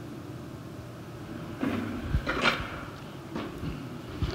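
Quiet room tone with a few faint knocks and rustles around two seconds in.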